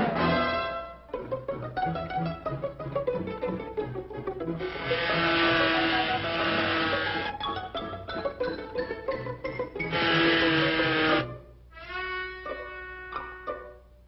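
Orchestral cartoon score music: plucked strings over a bouncing bass line, with two loud swells of the full orchestra in the middle and light plucked notes near the end.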